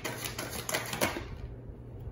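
Tarot cards being handled: a quick run of light clicks and taps, which thins out after about a second and a half.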